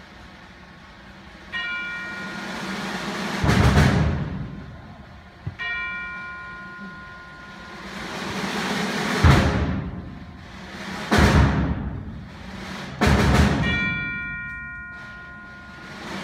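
Symphonic band opening with its percussion to the fore: swelling rolls build into four loud accented hits with timpani, and bell-like struck tones ring out three times.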